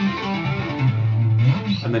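Electric guitar playing a fast legato pentatonic run of hammer-ons and pull-offs. The notes drop lower to a low note held for about half a second, and a voice starts right at the end.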